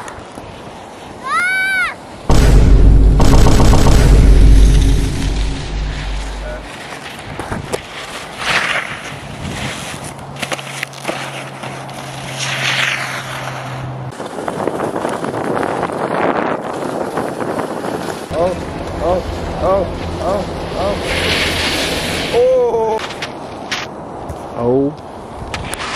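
Wind buffeting the microphone in a loud low rumble for a few seconds while skiing downhill, with skis hissing over the snow. Short whooping shouts come just before the rumble and again near the end.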